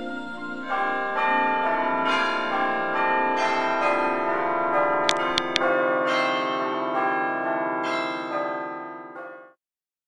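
Church bells pealing, many bells struck one after another and ringing on over each other; the sound cuts off abruptly near the end. Three quick clicks sound about halfway through.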